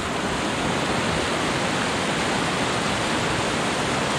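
River rapids: fast whitewater rushing over rocks, a steady, even rushing noise throughout.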